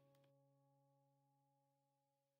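Near silence: the sound track is almost empty between stretches of narration.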